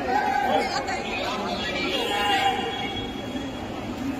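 Crowd chatter: many voices talking over one another as a group of people walks along together.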